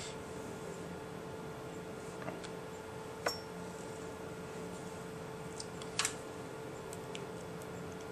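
Steady low room hum with three light clicks on the workbench, the loudest about six seconds in.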